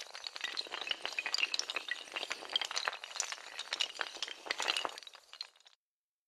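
Sound effect of a row of dominoes toppling: a dense, irregular run of hard clicks and clinks that starts suddenly and stops abruptly about five and a half seconds in.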